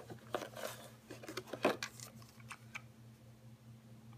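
Light clicks and rustles of a plastic TrackMaster toy engine being handled and turned over, busiest in the first two seconds and then quieter.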